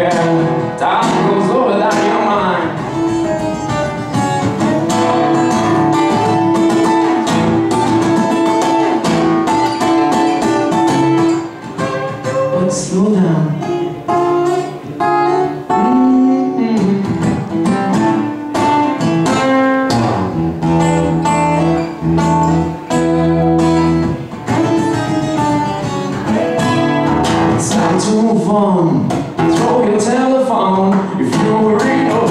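A man singing a song while strumming an acoustic guitar, a solo live performance with voice and guitar together throughout.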